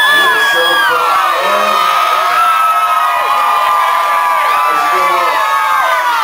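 Concert crowd cheering and screaming, with many high held screams and whoops overlapping.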